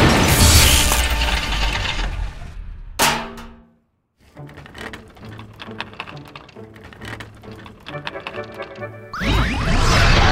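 Cartoon sound effects: a loud crash and clatter that dies away, a sharp ringing hit, a moment of silence, then quiet music. Near the end a ray-gun zap starts suddenly, loud and full of sweeping, warbling tones, as the shrink ray fires.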